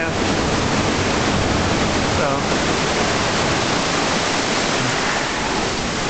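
Ocean surf surging into a sea cave and washing over rocks and sand, a loud steady rush of water.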